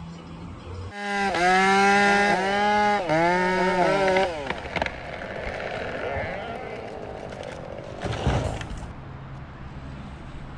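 A chainsaw runs at high revs into a large tree trunk, its pitch dipping and climbing as the chain bites. It then settles into the steadier noise of the cut, with a sudden loud burst about eight seconds in.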